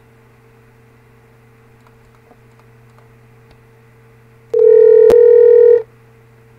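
A loud electronic beep, one steady pitch with overtones, starts about four and a half seconds in and lasts just over a second, with a sharp click in the middle of it. Before it only a low steady electrical hum is heard.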